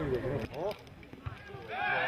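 Men's voices calling out across a football pitch during play, dropping off briefly in the middle before the shouting picks up again near the end.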